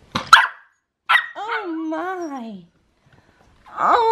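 Puppy barking: two short, sharp barks, then a long wavering howl-like bark about a second in that drops in pitch as it trails off, and another drawn-out call starting near the end.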